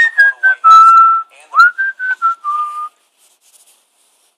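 A person whistling a short tune of clear notes: a few stepping down, one long held note, a quick upward swoop, then a few more stepping down. It stops about three seconds in.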